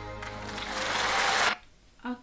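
The last held chord of a live concert performance dying away as audience applause and cheering swell up, then cut off abruptly about one and a half seconds in, leaving quiet room tone.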